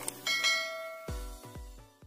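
Subscribe-button animation sound effects: two quick mouse clicks, then a bright bell chime for the notification bell. Under them, outro music ends with a few low notes and fades out.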